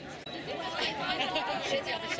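Indistinct chatter of several people talking at once, with no single voice standing out; it grows louder about half a second in.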